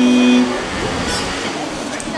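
A single steady held note, the starting pitch before an a cappella song, stops about half a second in. Then comes a hissing background with faint voices.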